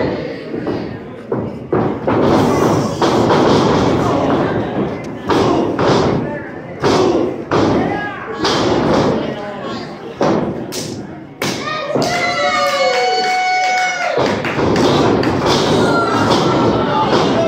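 Wrestlers' bodies and feet thudding on the ring canvas: a string of sharp thumps and slams at uneven intervals, among shouting voices. About twelve seconds in, one voice holds a long high-pitched yell for about two seconds.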